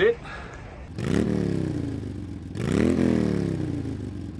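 A motor vehicle engine twice rising sharply in pitch and then falling away slowly, each lasting about a second and a half. The first starts abruptly about a second in, the second about a second and a half later.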